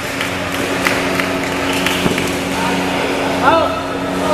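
Busy badminton hall ambience: background voices and scattered sharp clicks from play on the courts, over a steady low hum. A short high squeal stands out about three and a half seconds in.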